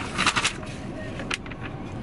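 Low, steady background rumble inside a car's cabin, with a few short rustles and clicks near the start and once in the middle as a printed paper sheet is handled.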